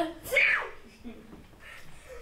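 A child's voice letting out a short, loud exclamation near the start, its pitch falling sharply, then only faint room sound.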